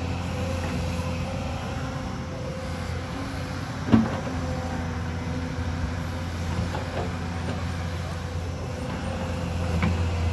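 Hyundai crawler excavator's diesel engine running steadily under working load, with a steady tone above the engine. A sharp knock of the steel bucket striking the ground comes about four seconds in, the loudest moment, and a lighter knock comes near the end.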